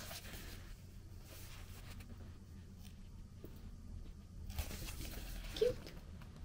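Faint rustling of a paperback manga volume being handled and its pages leafed, over a low steady hum; the rustling grows louder for a moment near the end.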